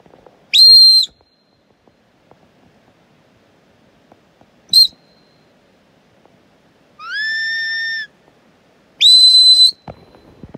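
A sheepdog handler's whistle commands to a working dog: four separate blasts. A loud one that swoops up and holds about half a second in, a short pip near the middle, a lower steady note about seven seconds in, and a last one that swoops up and holds near the end.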